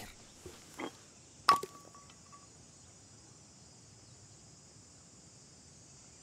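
A stainless steel vacuum flask dropped, landing with a single sharp metallic clank about a second and a half in that rings briefly. A steady, faint high hum of insects runs underneath.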